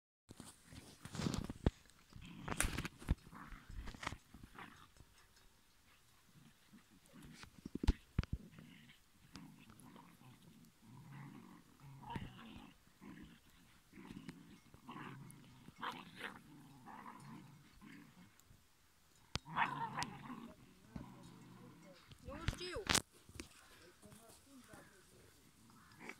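Two young dogs play-fighting, growling in short irregular bursts throughout. A few sharp knocks cut in, the loudest about eight seconds in.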